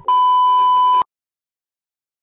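A single loud electronic beep: a steady pure tone of the censor-bleep kind, held for about a second and then cut off sharply.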